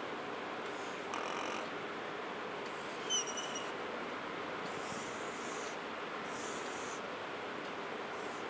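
Marker pen drawing on a whiteboard: several short scratchy strokes with a brief squeak about three seconds in, over a steady background hiss.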